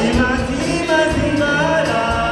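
Comorian twarab music performed live: a man sings lead into a microphone over the band's accompaniment, which has a steady beat.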